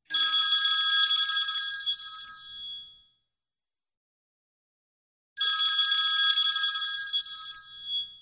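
A telephone bell ringing twice, each ring lasting about two and a half seconds and fading out, with a pause of a few seconds between the rings.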